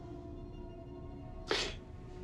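Quiet film-score drone of steady held tones; about one and a half seconds in, a man gives a short, sharp exhale, a scoff through the nose.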